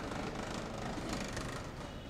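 Street traffic noise with a vehicle engine running close by, growing briefly louder about a second in.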